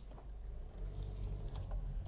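Low, steady rumble of a car heard from inside the cabin, with a few light clicks and rustles from the phone being handled about halfway through.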